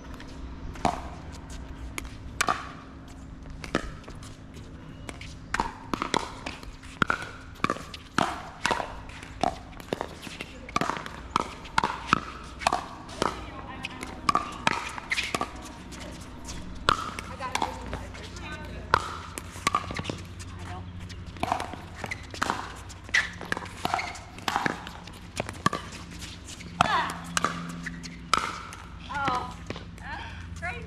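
Pickleball paddles striking a hard plastic ball in a doubles rally: a long run of sharp pops, often less than a second apart and quicker in places.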